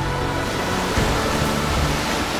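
Sea waves breaking and splashing against shoreline rocks, a steady rushing wash of surf, under a background music bed of held low notes.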